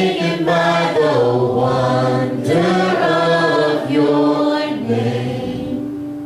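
Church worship band playing a slow worship song with voices singing long, held notes over electric guitar, keyboard and bass; it eases off slightly near the end.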